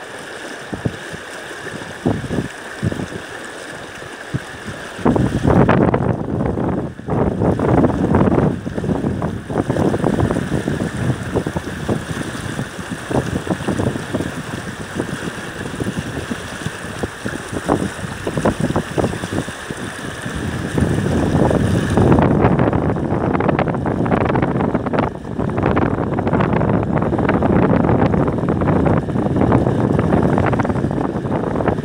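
Wind buffeting the phone's microphone over the steady rush of a fast, shallow river. It is lighter for the first few seconds, then comes in heavy gusts from about five seconds in and again strongly after about twenty seconds.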